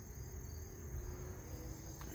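Crickets trilling: a faint, steady, high-pitched insect chorus, with a low rumble underneath.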